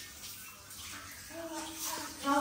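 Hand-held shower head spraying water onto a toddler in a tiled shower stall, a steady hiss that starts suddenly and grows. A small child's voice comes in over it in the second half.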